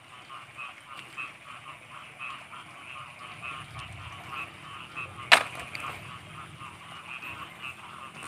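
Frogs calling in a steady chorus of short croaks, repeating evenly several times a second. A single sharp click cuts through about five seconds in.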